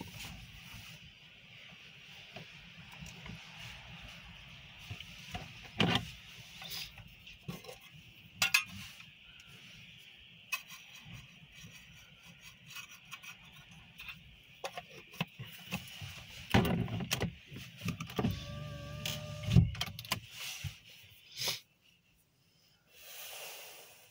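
Wind gusting on the microphone during a snowstorm: an uneven low rumble with a faint hiss, broken by scattered knocks. A short pitched hum comes in a few seconds before the end, and the sound drops out briefly near the end.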